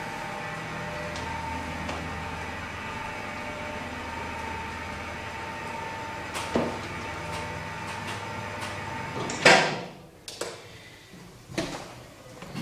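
Platform lift running with a steady hum and a thin whine while the platform travels, then a loud clunk about nine and a half seconds in as it stops, followed by a couple of softer clicks.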